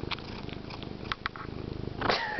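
Domestic cat purring loudly close to the microphone, a steady fast-pulsed rumble, with a few brief clicks over it.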